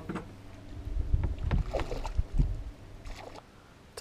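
Uneven low knocks and rumbles of handling on a small boat, with water splashing against the hull as a hooked flathead is brought alongside to be netted.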